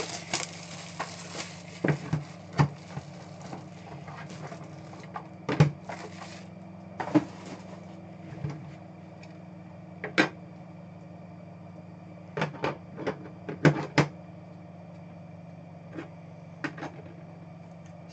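A cardboard trading-card box and its packs being handled on a table: irregular taps and knocks with brief rustles of packaging, the longest in the first second or so, over a steady low hum.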